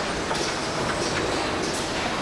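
Car assembly line noise: a steady mechanical din of factory machinery, with short hisses recurring several times.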